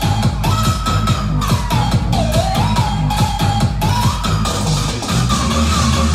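Vinahouse-style electronic dance remix: a fast, steady drum beat over heavy bass, with a high melody line sliding up and down above it.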